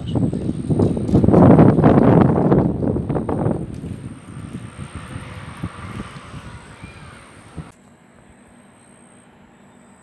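Gusty wind buffeting the microphone, loudest in the first three to four seconds and then dying away. Near the end it cuts to a faint steady hum.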